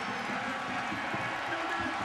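Football stadium crowd cheering steadily, a wash of many voices.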